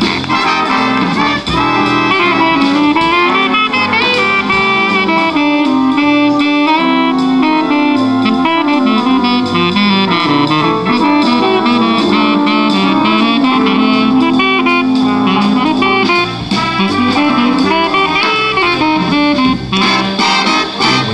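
Jazz saxophone solo over a big band's accompaniment.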